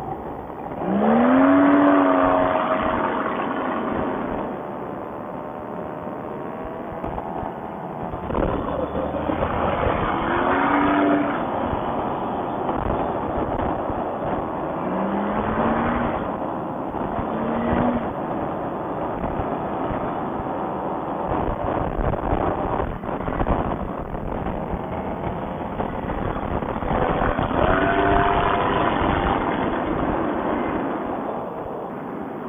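Paramotor engine and propeller running in flight, over a steady rush of air. The engine is throttled up several times: its pitch rises and then holds, most strongly about a second in and again near the end.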